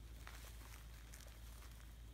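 Near silence: faint steady hiss and low hum, with a few faint ticks.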